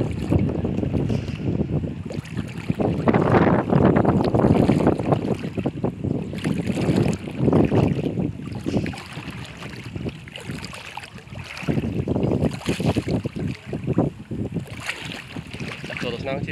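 Wind buffeting the microphone in irregular gusts, with water swishing and splashing as legs wade through shallow floodwater.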